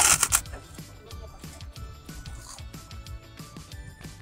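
A loud, brief crunch as a large white kerupuk (Indonesian fried cracker) is bitten right at the start. After it comes background music with a steady low beat.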